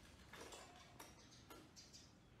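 Near silence, with a few faint clicks about half a second apart.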